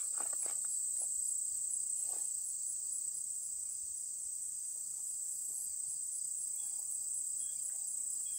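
Steady outdoor insect chorus: a continuous high-pitched shrill trill with an even rapid pulse, with a few faint knocks in the first couple of seconds.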